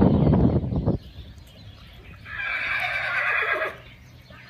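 A horse whinnying once for about a second and a half in the middle, the call trailing lower at its end. Before it, a louder, low, rumbling burst of noise fills the first second.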